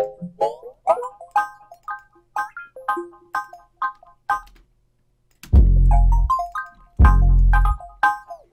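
Hip-hop beat playing back from a DAW: a chopped melodic sample in short, sliding stabs about twice a second, then, after a brief gap, two long, loud 808 bass notes in the second half.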